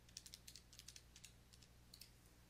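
Faint, quick tapping of calculator keys, about ten presses in the first second and a half, as a multi-step unit conversion is punched in.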